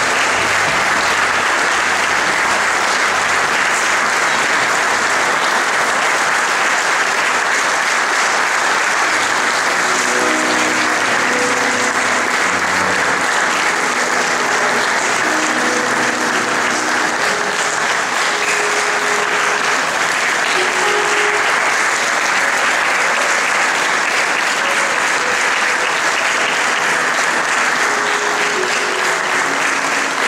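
Audience applauding steadily, a sustained wash of many hands clapping.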